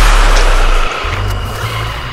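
Loud, distorted blast of noise with heavy bass, a meme-edit laser and explosion sound effect, cutting off about a second in and giving way to music.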